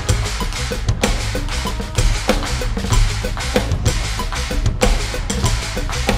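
Electronic drum kit played live along to a progressive-metal band backing track: a steady stream of kick, snare and cymbal hits over loud, bass-heavy band music.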